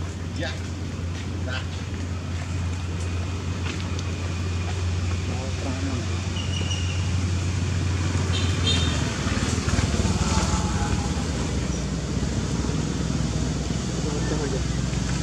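A steady low engine hum that gives way to a rougher rumble about nine seconds in, with distant voices.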